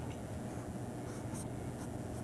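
A pen drawing lines on paper, a few short strokes heard over a steady low hum.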